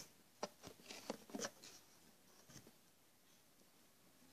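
Near silence, with a few faint taps and rustles in the first second and a half from hands working modelling clay, then only quiet room tone.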